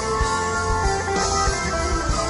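Hollow-body electric guitar playing a melodic line of held notes over a live band's drums, in an instrumental passage without vocals.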